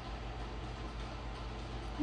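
Steady low hum with a faint even hiss: background room tone, with no distinct sound event.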